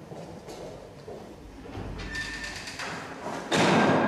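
Footsteps and a heavy glass-paned wooden door swinging shut in an echoing stone-floored entrance hall. Near the end, music starts suddenly and loudly.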